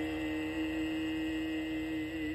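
The song's final note held steady: one sustained pitch with its overtones, moderately loud.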